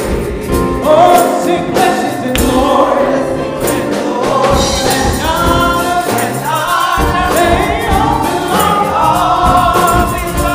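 A gospel choir singing into microphones, backed by keyboard and a steady beat.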